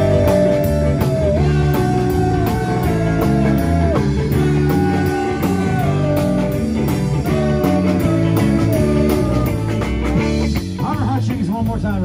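Live blues-rock band playing an instrumental break: a harmonica plays long held notes that bend down at their ends, over electric guitars, bass and drums.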